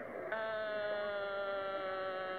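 One long sung note, held very steady and sinking slightly in pitch, starting a moment in.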